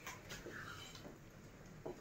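Faint stirring of penne in a stainless steel pot of boiling water, with a few light ticks of the spoon against the pot. The stirring keeps the pasta from sticking.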